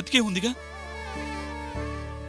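A man's voice speaks a few words at the start, then background score of sustained held notes over a low drone, with a shift to a new chord near the end.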